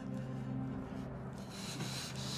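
Soft rubbing and rustling, strongest in the last half-second, over low, sustained background music tones.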